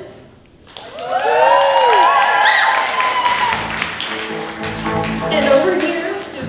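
A live band plays a short instrumental fill with sliding, bending notes, then a lower held chord, while the audience claps.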